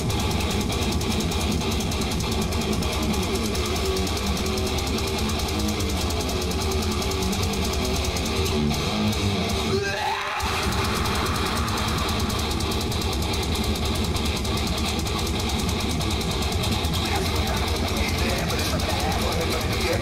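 Heavy metal band playing live: loud distorted electric guitar riffing over a heavy low end, with a split-second stop about halfway through.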